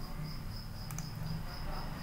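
A steady high-pitched chirping, pulsing about four times a second, over a faint low hum, with a single mouse click about a second in.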